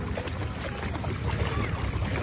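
Wind rumbling on a phone microphone over shallow water, with soft sloshing as a husky wades through the shallows.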